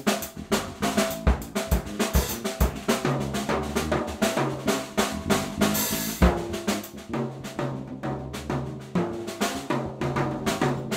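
Live drum kit played busily, with dense snare, bass-drum and cymbal strokes, over a steady bass line in a jazz-funk groove.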